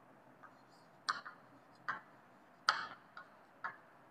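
Chalk writing on a chalkboard: about six short, irregular taps and scrapes as the chalk strikes and drags across the board, faint, with quiet between strokes.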